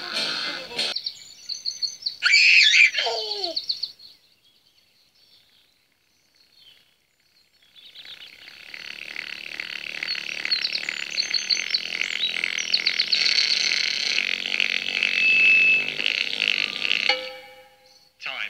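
Children's TV soundtrack music. A short musical phrase with a loud sliding note that falls in pitch is followed by a few seconds of near silence, then gentle instrumental music that fades out near the end.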